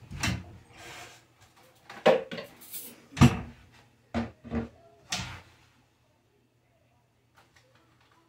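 Wooden kitchen cabinet doors opened and shut, with things knocked about as they are taken out: a string of knocks and bangs over the first five seconds, and a few faint ticks near the end.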